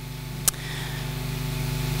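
Steady low electrical hum from the sound system, slowly growing louder, with one sharp click about half a second in.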